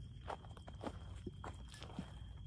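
Soft, uneven footsteps through forest undergrowth: a handful of quiet rustling steps, with a faint steady high-pitched whine throughout.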